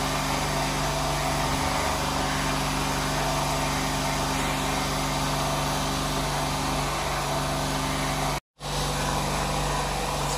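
Steady mechanical hum of a running motor, even and unchanging, with a brief dropout to silence about eight and a half seconds in.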